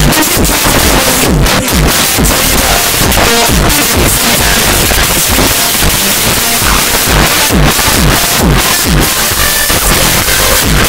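Loud electronic dance music from a DJ over the hall's sound system, with repeated falling bass swoops and a dense, unbroken mix.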